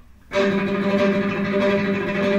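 Electric guitar playing one sustained note that is picked very rapidly, eight notes to the beat. It starts about a third of a second in, after a brief pause.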